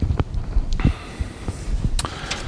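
Footsteps on a hard floor: a few soft, low thuds a fraction of a second apart.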